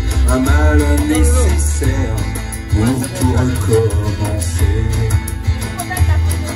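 Live pop-rock music through a PA: amplified acoustic guitar over a looped backing with a heavy bass line and steady percussion, with a melody line on top.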